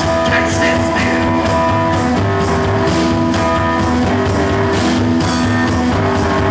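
Live blues-rock band playing an instrumental stretch with no singing: loud, distorted amplified keyboard chords held over steady drumming, the chords changing every second or two.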